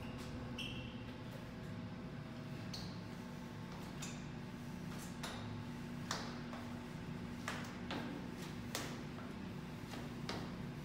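Footsteps of a person walking down stairs in sneakers, alternating feet, about one step a second from around five seconds in. A steady low hum runs underneath, and two short high squeaks come in the first three seconds.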